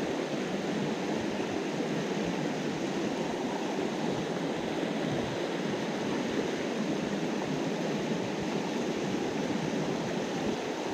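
A small mountain trout stream rushing over rocks through white-water riffles, running high after heavy rain: a steady, even rush of water.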